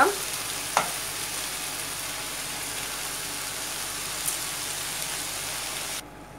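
Raw basmati rice being stirred into mushroom masala in a hot frying pan with a wooden spatula: a steady sizzle of frying, with one brief knock about a second in.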